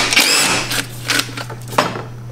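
Cordless DeWalt drill-driver whirring for about half a second as it backs out a fastener, its whine bending in pitch, followed by a few sharp clicks.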